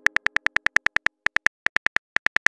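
Simulated smartphone keyboard clicks from on-screen typing: quick, even, sharp taps about seven or eight a second, with two short pauses, as a text message is typed out.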